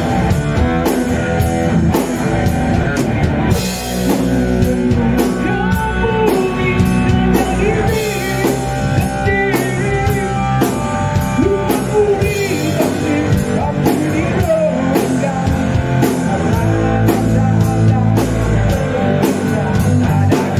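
Rock band playing live: electric guitar, electric bass and drum kit, loud and steady throughout.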